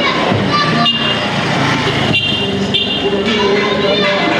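A vehicle horn tooting a few short times in a busy street, over running motorbike engines and background voices.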